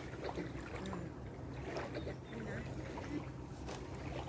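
Quiet, indistinct voices of people talking nearby over a steady low hum, with a few light clicks and rustles.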